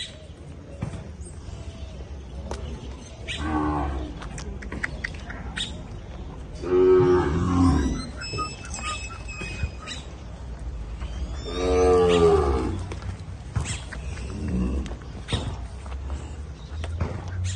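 Gyr heifers mooing in a pen, four separate calls. The loudest two come about seven and twelve seconds in.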